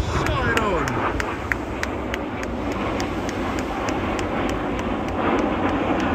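Steady distant jet roar of a formation of BAE Hawk T1 display jets flying past in formation, with a brief voice in the first second.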